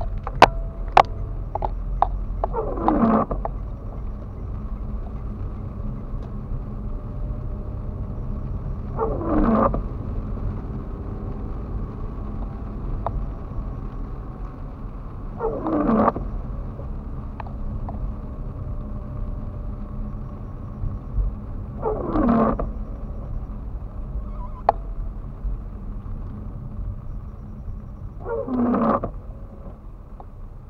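Car windscreen wipers on an intermittent setting, heard from inside the cabin: five wipes about six and a half seconds apart, each a short swish across wet glass that slides down in pitch, over the steady rumble of the engine and tyres on the wet road. A few sharp clicks come in the first two seconds.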